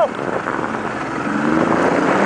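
A 90 hp Mercury outboard motor opening up under throttle to pull a person up out of the water on a tow rope. Its pitch rises through the second half, over wind and water noise.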